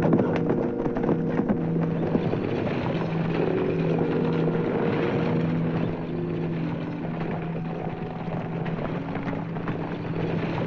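Horses galloping, a dense clatter of hoofbeats that is thickest in the first couple of seconds, under a dramatic orchestral film score of held chords.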